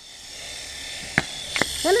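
Small toy drone's motors and propellers buzzing with a steady high whine, with two sharp clicks a little after a second in.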